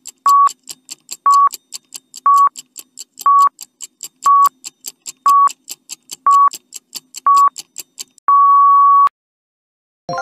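Countdown timer sound effect: a clock ticking about four times a second with a short beep every second, ending about eight seconds in with one longer beep that marks time up.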